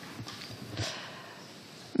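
Quiet room tone with a few faint soft knocks and a short rustle a little under a second in.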